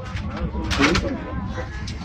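Steady low rumble of an airliner cabin in flight, with a brief wavering, warbling sound about a second in.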